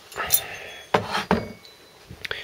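A light metallic clink and handling noise as cast-iron engine parts are moved about on a wooden workbench, followed about a second in by a brief murmur of voice.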